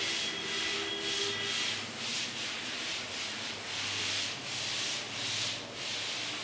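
Chalkboard duster wiping chalk off a chalkboard in repeated back-and-forth strokes, about two swishes a second.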